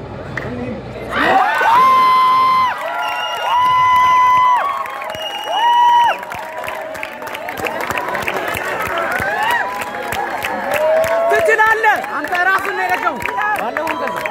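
A crowd of spectators cheering and shouting over a goal. The loudest part near the start is three long, held yells, each about a second long, followed by a stretch of overlapping excited shouts.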